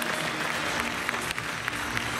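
Audience applauding, a steady clapping of many hands.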